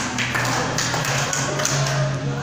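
Thick pomelo peel and pith being torn apart by hand, a quick run of sharp crackling taps, about five in two seconds, over a low steady hum.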